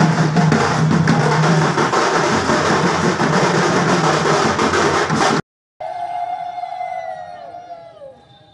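Loud, dense drumming on hand drums, which cuts off abruptly about five seconds in. After a brief silence, a few high held tones follow, bending downward and fading near the end.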